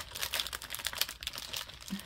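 A clear plastic bag crinkling in quick, irregular crackles as sheets of handmade paper are pulled out of it by hand.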